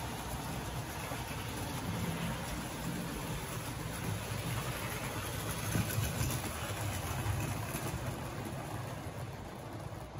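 Vintage OO gauge model trains running on Tri-ang Super 4 track: a steady hum of small electric motors and the running of wheels over the rails.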